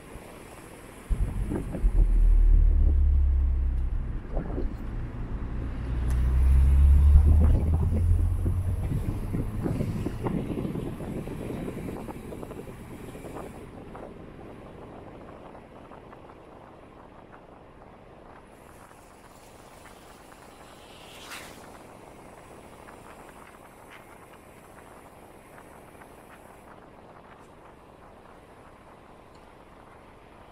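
Wind buffeting the microphone of a moving car: a sudden loud low rumble about a second in that surges twice, then fades into steadier, quieter driving noise. A single short click about two-thirds of the way through.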